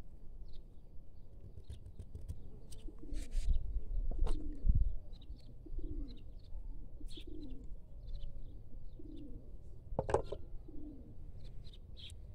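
A dove cooing in a steady series, one low call about every second from about three seconds in. Scattered light clicks and a low rumble around four to five seconds in lie under it, with one sharper click about ten seconds in.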